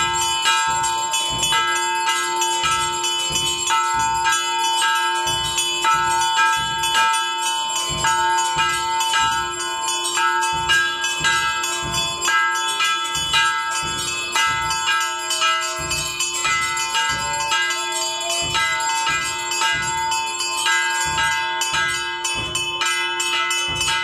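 Hanging brass temple bell rung by hand over and over, struck about twice a second so its ringing never dies away.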